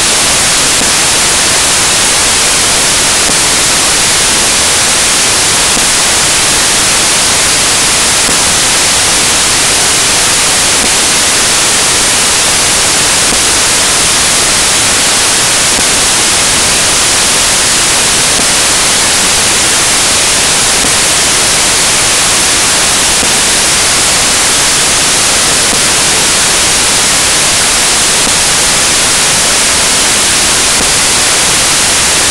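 Loud, steady hiss of static, like white noise, that does not change at all.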